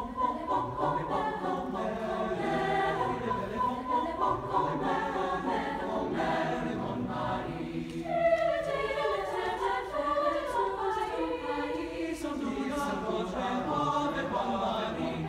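Mixed high school choir singing a French Renaissance song in several parts, with a short dip and a fresh entry about eight seconds in.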